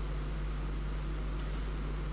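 Steady room tone: a constant low hum with an even hiss over it, unchanging throughout.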